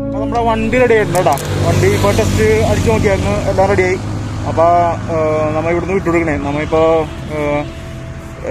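A man talking, over a low steady hum.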